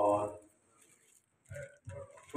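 A man's amplified speech in a hall: a word trails off, then there is a pause of about a second, and short sounds come as he resumes.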